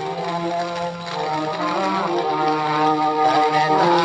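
An old Sindhi song recording played from a record on a wind-up portable gramophone: a melody of held notes that step from pitch to pitch, with no high treble.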